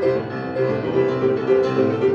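Piano playing fast boogie-woogie, a quick run of short repeated notes and chords.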